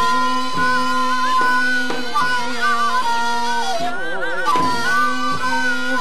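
Korean traditional instrumental ensemble music for the Seungmu dance. Wind and string melody lines waver and bend in pitch over a held low tone, with occasional drum strokes.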